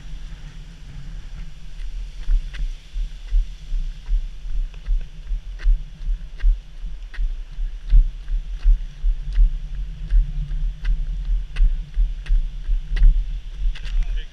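Brisk walking footsteps in heavy firefighter boots and turnout gear, heard as a steady rhythm of low thuds about two to three a second through the body-worn camera. Light clicks of gear come with the strides, over a low wind rumble on the microphone.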